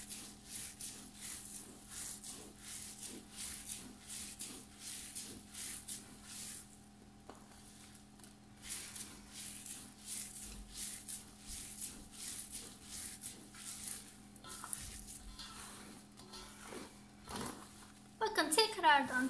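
Hands rubbing a bulgur çiğ köfte mixture against a dimpled stainless steel tray in repeated kneading strokes. It is a soft, rhythmic scraping of about two or three strokes a second, with a short pause about seven seconds in. The bulgur is being worked until it soaks up the lemon juice.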